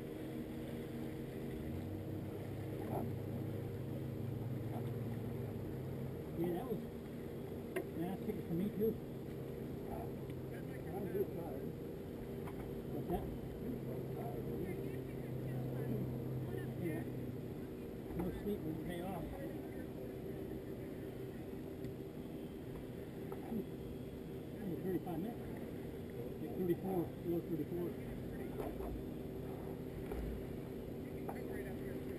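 A motorboat engine running steadily with a low hum, heard over water lapping at a kayak's hull. Brief indistinct voices come and go.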